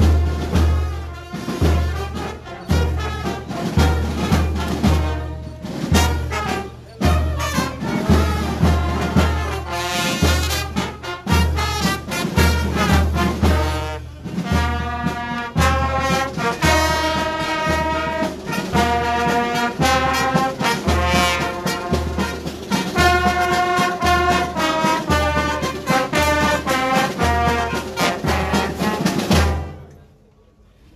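Brass-band music with a steady deep drum beat about twice a second and held brass melody notes; it cuts off abruptly at the end.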